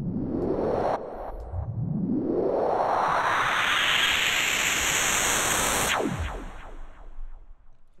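Synthesized riser effect from the Serum synth, distorted and downsampled, with reverb. A short upward sweep breaks off about a second in. Then a longer noise sweep rises from low to high over about three seconds and holds. About six seconds in it cuts off with a quick falling tone and a fading reverb tail.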